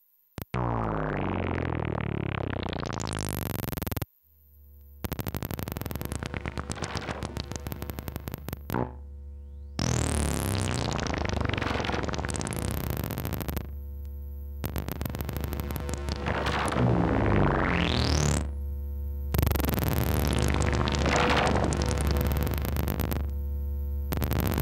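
Eurorack modular synthesizer built around an Erica Synths Pico System III and sequenced by a Qu-Bit Bloom, playing an experimental drone patch. A rapid stream of sequenced notes with rising filter and pitch sweeps breaks off abruptly every four to five seconds and starts again, over a steady low drone.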